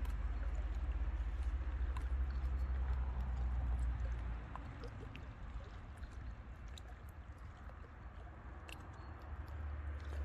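Small lake waves lapping and splashing against shoreline rocks, with many little trickling ticks. A low rumble underneath fades about four and a half seconds in and returns near the end.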